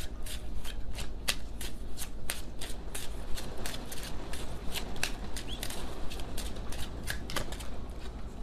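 A deck of oracle cards being shuffled by hand: a rapid, uneven run of sharp card snaps and flicks that keeps going without a break.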